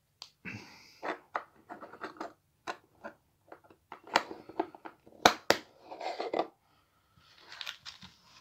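Hands unpacking a Mega Construx Pokémon kit: irregular scratching, crinkling and clicking of packaging, with two sharp knocks close together about five seconds in, as a plastic Poké Ball capsule is handled and set on a wooden table.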